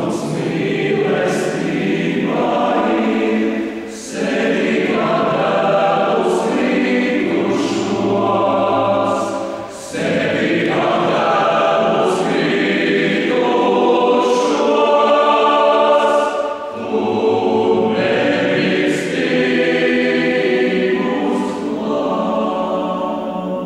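Men's choir singing in full voice, the phrases broken by short breaths about every six seconds, with crisp sibilant consonants.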